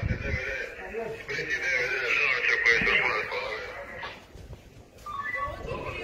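People's voices, with a loud, high, wavering cry about a second in that lasts for about two seconds, then a brief lull before talking resumes.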